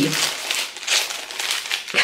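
Clear plastic packaging of a wax melt bar crinkling irregularly as it is handled.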